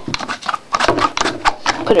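Plastic clicks and knocks of a one-handed bar clamp being handled and positioned over glued layers of file-folder paper, an irregular run of sharp clicks.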